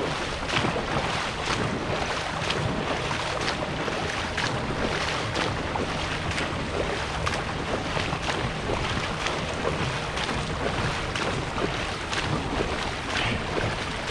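Dragon boat paddles splashing and water rushing past a boat underway, with wind buffeting the microphone. It is a steady wash of water noise broken by frequent irregular splashes.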